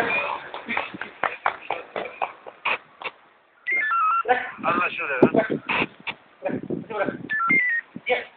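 Police two-way radio traffic: voices over the radio, broken by short runs of stepped beep tones about four seconds in and again near the end.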